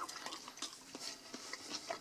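Quiet chewing of a crisp potato pancake with scattered light clicks, and a ceramic plate handled on a wooden table near the end.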